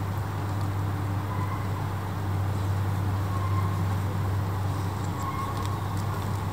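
Steady low rumble of distant city traffic, with a few faint short tones over it in the second half.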